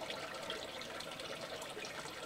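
Water trickling steadily in a turtle's aquarium tank, with small scattered drips and splashes.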